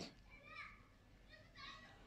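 Near silence with faint, distant children's voices in the background.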